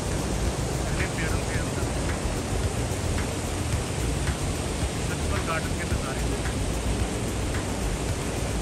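Steady rushing of water from the garden's fountains, channels and cascades.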